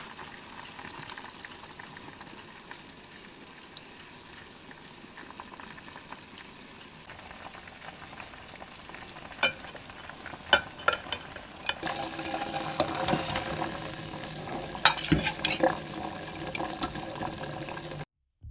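Chinese bayberries boiling in a pot, the liquid bubbling and popping. The first several seconds hold only a faint steady hiss. A few sharp clicks come about halfway through, and the bubbling grows louder and busier in the second half.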